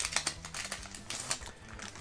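Foil booster-pack wrapper crinkling as the cards are pulled out, then the trading cards sliding and flicking against each other as they are flipped through: an irregular run of quick clicks and rustles.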